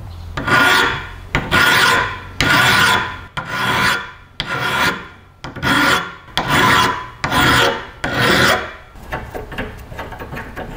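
Hand filing: a series of long rasping strokes, roughly one a second, stopping about nine seconds in.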